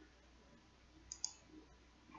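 Two quick computer mouse clicks close together about a second in, against near silence.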